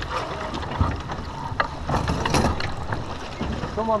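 Wind buffeting the microphone and water rushing past the hull of a T-10 sailboat under way, with several sharp clicks and knocks of deck hardware as the crew takes the spinnaker down.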